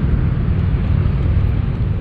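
Wind buffeting the microphone: a loud, irregular, fluttering low rumble with a light hiss over it.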